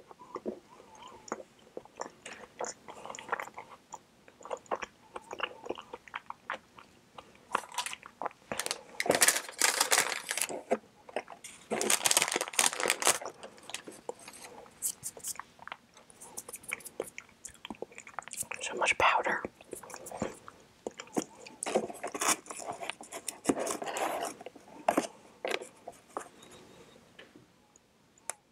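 Close-miked chewing and wet mouth sounds of someone eating soft mango mochi ice cream: many small clicks and smacks, with several louder stretches of chewing.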